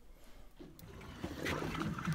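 Quiet open-water boat ambience fading in after a brief near silence: a low wash of water and wind on the deck, with a faint low hum near the end.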